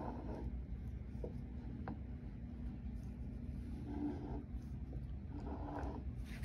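Low steady hum under a few faint, light clicks of metal engine parts being handled.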